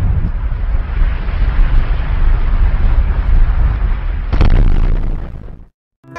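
Cinematic explosion sound effect: a loud, long rumbling blast heavy in the deep bass, with a second surge about four seconds in, fading away to silence near the end.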